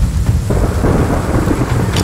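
Thunder rumbling over heavy rain, a storm sound effect. A deep low roll runs throughout, and the rain hiss thickens about half a second in.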